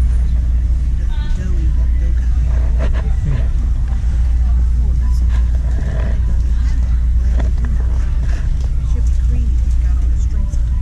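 A steady low rumble throughout, with faint voices in the background.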